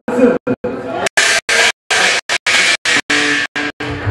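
A man's voice through a PA over a live gospel church band with organ, in a large hall. The sound is broken by many brief dropouts, two or three a second.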